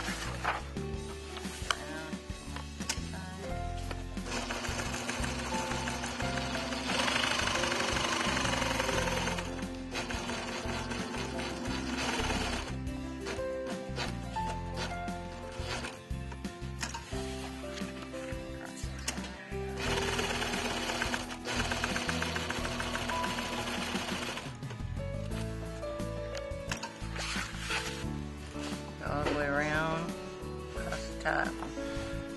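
A four-point zigzag sewing machine stitching webbing onto sailcloth in two short runs, about a quarter of the way in and again about two-thirds of the way in, over steady background music.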